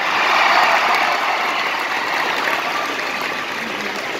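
Large arena audience applauding, the clapping swelling at once and then slowly easing off.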